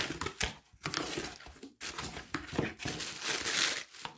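Tissue paper crinkling and rustling as a package is unwrapped by hand, in irregular spells with two short pauses.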